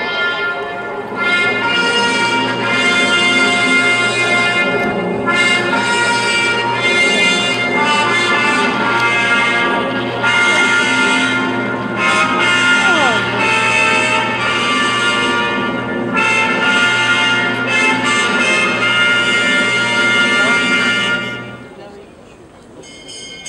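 Slow brass music: held notes in phrases of a few seconds with short breaks between them, playing a hymn-like melody, stopping abruptly near the end.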